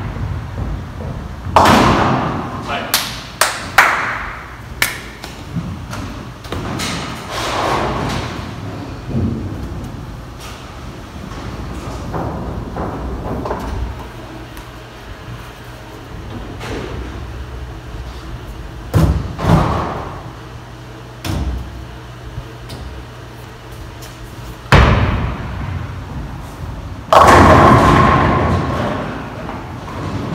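Ten-pin bowling: balls thudding down onto the lane and rolling, and pins crashing, several times over, with the loudest crashes near the start and near the end.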